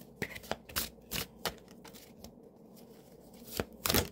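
Tarot deck being shuffled by hand: a quick run of sharp card snaps in the first second and a half, sparser flicks after, then a louder burst of shuffling near the end.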